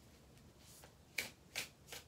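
A deck of tarot cards shuffled by hand: quiet at first, then three short, sharp card snaps in the second half.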